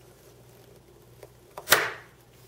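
Small scissors snipping through a twisted two-wire Christmas light cord: a faint tick, then one sharp snip about three-quarters of the way in.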